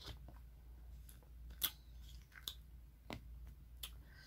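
Faint, crisp crunches of passion fruit pulp and seeds being chewed close to the microphone: about six sharp clicks at uneven intervals.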